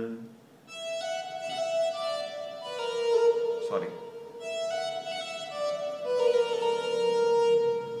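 A synthesizer patch played from a MIDI keyboard: a slow melodic phrase of held notes, each rich in overtones. It starts about a second in, pauses briefly near the middle, then continues.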